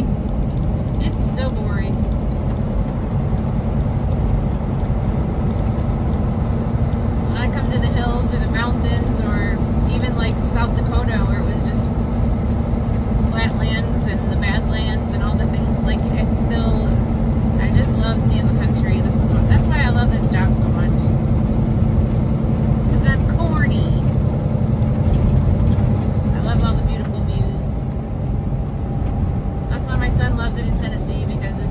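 Cab noise of a Kenworth T680 semi truck cruising at highway speed: a steady low engine drone with a constant hum and road noise.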